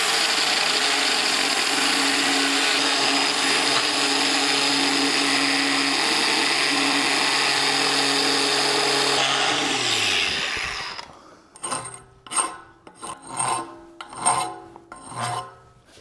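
Angle grinder with a grinding stone running against the inside edge of a steel pipe end, grinding the bore out to thin the wall. The steady grinding holds for about ten seconds, then the grinder is switched off and winds down with a falling pitch, followed by a handful of short rubbing strokes.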